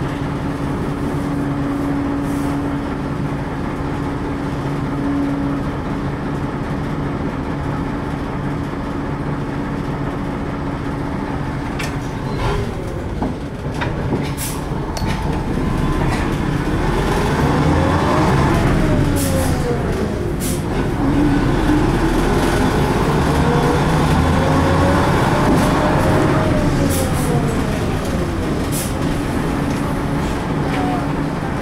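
The old LAZ-695T bus heard from inside while it drives: a steady hum at first. From about halfway on, a whine rises in pitch as the bus speeds up and falls as it slows, twice over, with a few short rattles.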